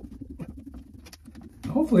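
A gallon can of paint being shaken hard by hand: a quick, irregular run of small knocks and rattles.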